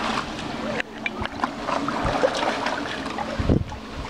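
Water splashing and sloshing as children wade and kick in a shallow stone spring pool, with faint children's voices in the background. Wind buffets the microphone with a low rumble near the end.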